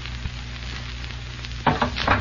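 Hiss and crackle of an old radio-broadcast recording, over a steady low hum. A faint click comes about a quarter second in, and a voice starts near the end.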